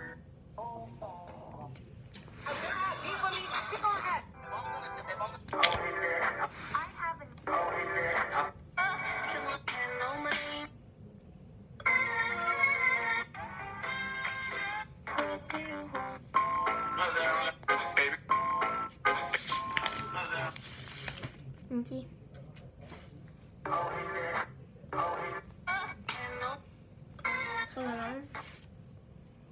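Song snippets with singing played from a phone's speaker, starting and stopping abruptly every second or two as one track after another is previewed.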